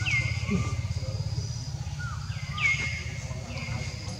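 Birds calling outdoors: short calls that fall in pitch, four in a row at uneven spacing, with fainter chirps and a high steady trill behind them, over a steady low rumble.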